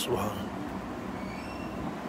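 Steady background hum and hiss of a room during a pause in a talk, with one sharp click right at the start.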